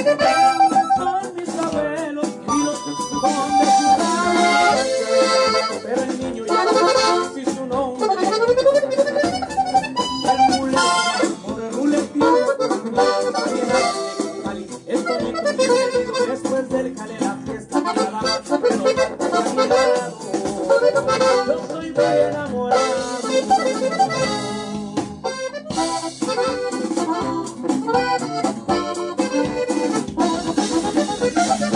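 Accordion playing a regional Mexican (norteño-style) melody in a continuous run of quick notes.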